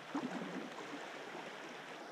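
Water splashing and trickling around a kayak being paddled: a steady wash with irregular small splashes from the paddle blades and hull.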